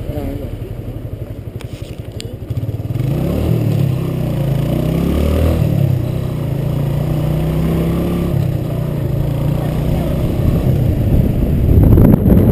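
Motorcycle engine idling with a fast low pulse, then about three seconds in it pulls away: the engine note rises and dips a few times through the gears and settles into a steady run.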